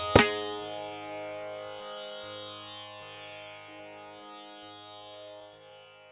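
The closing cadence of a Carnatic ensemble: one last sharp drum stroke, then a held note on veena and strings over a steady drone, slowly fading away.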